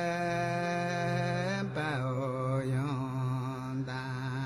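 A voice chanting long held notes over a steady low drone. About two seconds in, the note drops lower and begins to waver.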